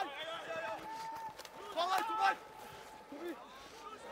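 Men's voices shouting and calling out on a rugby field, quieter than the commentary: short calls, one held briefly about a second in and a cluster of shouts around two seconds in.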